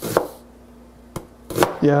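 Chef's knife slicing an onion on a cutting board: three sharp knocks of the blade hitting the board, one at the start, then a lighter one and a stronger one in quick succession about a second and a half in.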